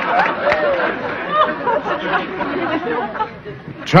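Studio audience laughter dying away, with scattered individual laughs and chuckles.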